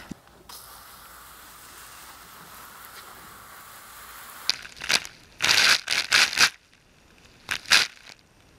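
A steady hiss of hose water spraying onto soil, then, about halfway through, several loud crunching scrapes of a garden fork working into the damp soil, with one more near the end.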